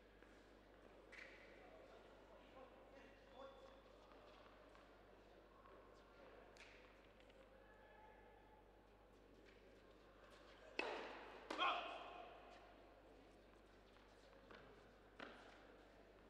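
Tennis balls struck with rackets in an indoor hall: a serve about eleven seconds in, the return under a second later, and another shot near the end. Each hit is a sharp pop that echoes off the hall. Faint voices murmur before the point.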